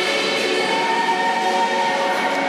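Music with long, held choir-like voices.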